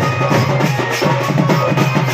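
Folk dance music led by dhol drums beaten in a fast, even rhythm.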